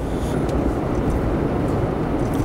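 Steady road and engine noise heard from inside a moving vehicle's cabin, a low even rumble.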